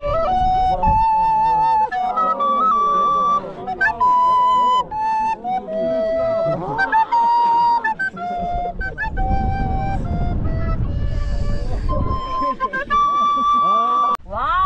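A plastic recorder playing a slow melody of held, steady notes that step between pitches in short phrases. A low rumbling noise sits under the notes from about nine to twelve seconds in.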